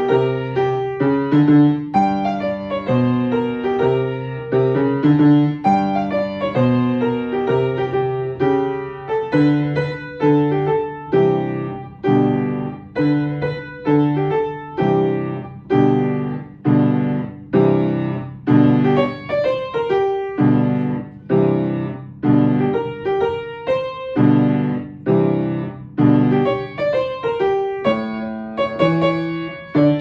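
Piano played with both hands: a simple right-hand melody over a left-hand bass line and chords, with notes struck at a steady, moderate beat.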